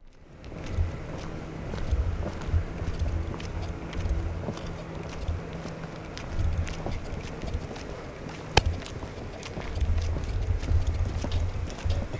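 Footsteps of people walking on a paved driveway, with irregular low thumps and a steady low hum underneath, and one sharp click past the middle.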